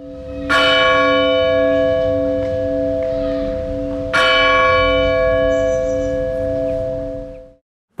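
Church bell sounding in a title-sequence jingle: two strokes about four seconds apart, each ringing and slowly dying away over a held low chord. The sound fades out just before the end.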